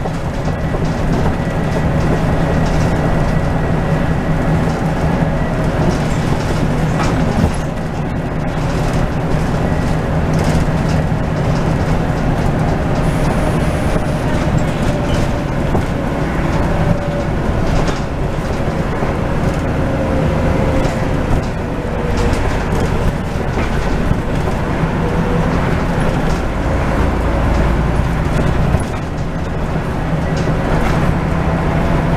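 Interior noise of a Scania N94UD double-decker bus on the move: the diesel engine runs with a steady low drone under road noise and scattered short rattles. A faint whine drifts in pitch, and a deeper rumble swells for a few seconds near the end.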